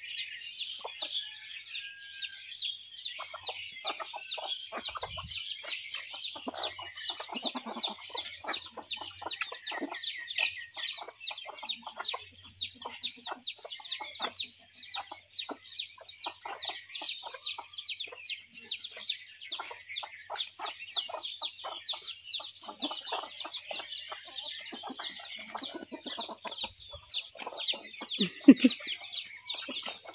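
Backyard hens and chicks at scattered grain: a continuous stream of rapid high peeps, with lower clucks in between.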